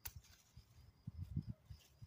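A single sharp snip of scissors closing on a spearmint stem, followed about a second later by a few soft low bumps and rustles as the stems are handled.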